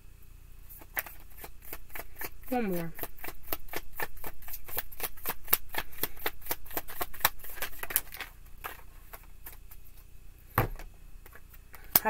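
A tarot deck being shuffled by hand: a quick, even run of card snaps, about five a second, lasting some seven seconds. Near the end a single thump, as of the deck knocking on the table.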